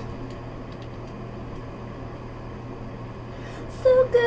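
Steady low hum and hiss of room background noise, with a few faint soft clicks.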